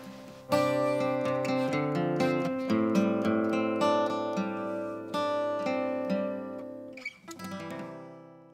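Acoustic guitar playing a melodic passage of picked notes over ringing chords, starting about half a second in and fading out toward the end.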